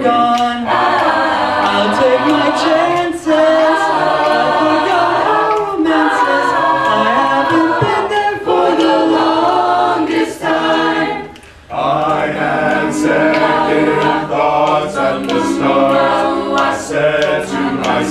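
A mixed-voice a cappella group singing in close harmony without instruments. There is a brief break about eleven seconds in before the voices come back in together.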